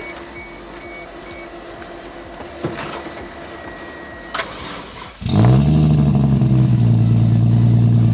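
Toyota 1JZ-GTE inline-six catching on a portable jump starter's boost after its battery went completely dead. A click about four seconds in as everything clicks on, then the engine fires about a second later, dips slightly and settles into a steady idle.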